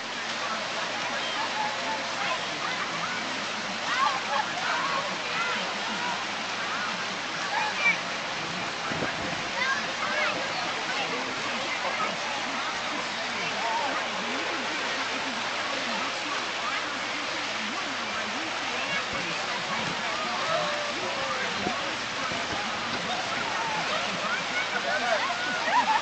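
Steady rush of water pouring over a low concrete weir used as a tubing chute, with faint distant voices and shouts of people in the water.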